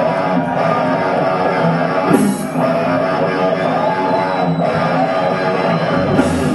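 A live hard rock band playing, with distorted electric guitars carrying a riff through the stage amplifiers.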